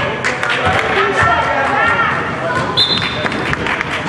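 Indoor basketball game sounds in a hard, echoing gym: voices calling out over repeated ball bounces and footfalls on the hardwood court, with a short referee's whistle blast about three seconds in.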